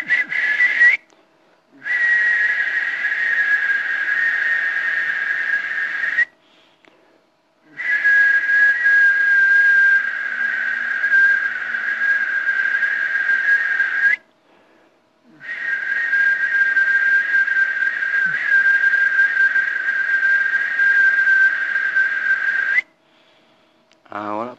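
A man whistling long, steady, high notes through his lips: a brief note, then three long held notes of about four to seven seconds each, with short pauses for breath between them.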